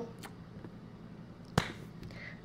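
A single sharp click about one and a half seconds in, over quiet room tone.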